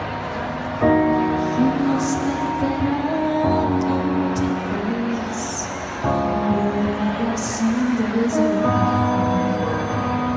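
A woman singing a slow song into a handheld microphone over a backing track, heard through a PA system. The notes are long and held, and the chords change about a second in and again about six seconds in.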